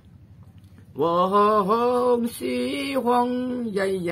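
A person singing slow, long-held notes in a chant-like style, with no instrument heard. The singing begins about a second in, after a short lull.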